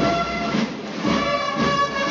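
Band music, wind instruments holding sustained chords that shift from note to note.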